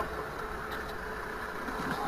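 Car engine and road noise heard from inside the cabin: a steady low rumble with a faint even hum.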